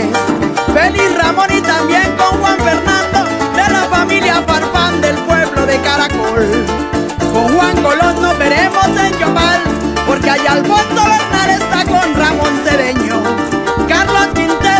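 Colombian-Venezuelan música llanera (joropo) played on a llanera harp with band, in an instrumental passage without singing; the music runs loud and steady.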